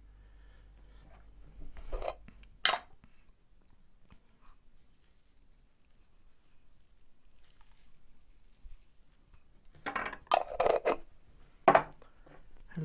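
Kitchen containers being handled on a table while salt and seasoning are fetched: two sharp knocks about two seconds in, faint handling noise, then a cluster of clatters near the end, the last one the loudest.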